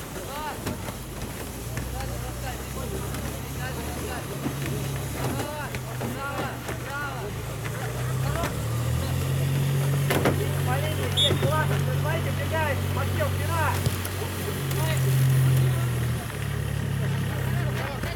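Players' shouts and calls across an outdoor football pitch, short and scattered, over a steady low engine-like drone that grows louder about halfway through.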